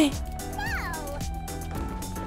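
One short meow, falling in pitch, about half a second in, over background music with a steady beat.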